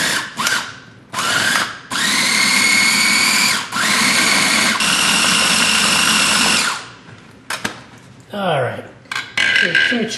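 Countertop food processor motor pulsed: a couple of short bursts, then three runs of one to three seconds each with a steady whine, chopping cilantro, parsley, garlic and olive oil into chimichurri. The motor stops about seven seconds in.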